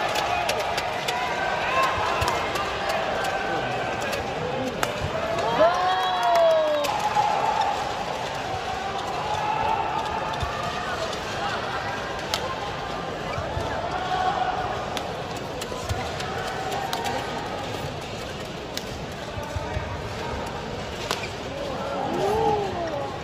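Badminton play in an arena: sharp racket strikes on the shuttlecock and court impacts now and then, over a steady murmur of crowd voices, with one loud drawn-out cry about six seconds in.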